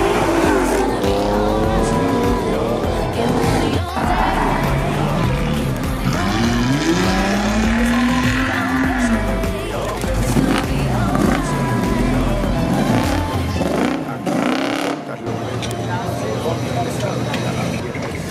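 American cars driving slowly past, their engines revving up and falling back several times, over background music.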